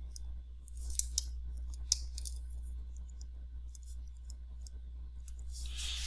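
Stylus tapping and scratching on a tablet screen while handwriting: irregular light clicks and scratches, over a steady low hum.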